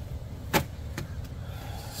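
Light handling noise from the bare door and its loose window glass: a sharp click about half a second in and a softer one about a second in, over a low steady rumble.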